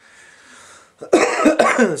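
A man coughing: a short run of loud, harsh coughs starting about a second in.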